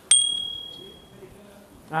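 A single bright bell 'ding' sound effect from a subscribe-button overlay animation, struck once just after the start and ringing out as it fades over about a second. A man's voice starts right at the end.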